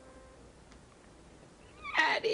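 The last notes of a piano chord fade away, then near the end a woman breaks into a loud, high sobbing cry.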